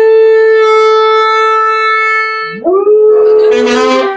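A saxophone holds a long steady note, then a dog joins in with a howl that glides up in pitch about two-thirds of the way through and holds, sounding together with the saxophone to the end.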